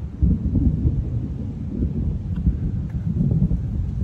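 Thunder rumbling low, rolling on without a break.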